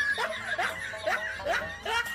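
A man laughing in a rhythmic run of short "ha" bursts, about two a second.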